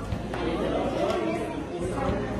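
Overlapping chatter of a crowd of onlookers, adults and children talking at once, with no words standing out.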